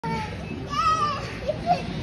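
A young child's high-pitched voice, with one drawn-out call a little under a second in and shorter vocal sounds after it.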